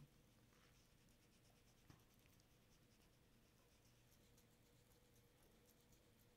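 Near silence with faint, quick scratchy dabbing of a round foam ink-blending tool on cardstock as ink is blended onto it; one small click about two seconds in.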